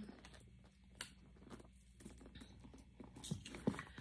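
Faint handling noises: light rustling with a few soft taps and clicks, a sharper one about a second in and two more after three seconds, as items are set down and a hand rummages in a handbag.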